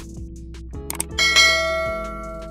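Subscribe-animation sound effects: a couple of quick mouse-click sounds, then a bright notification-bell ding just after a second in that rings and fades, over background music.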